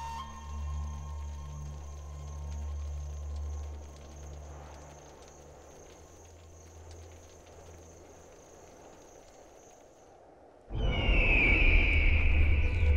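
Soft, low sustained background score that fades over several seconds into a faint, quiet bed with a thin steady high tone. Near the end a loud passage cuts in suddenly, topped by a high wavering sound.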